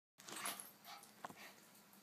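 Faint sounds from dogs playing with a kitten: a short breathy noise about half a second in, softer traces after it, and a light tap a little past a second in.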